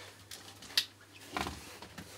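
Motorcycle helmets being handled on a workbench: a sharp click just under a second in and a duller knock about half a second later, with light scraping and rustling between.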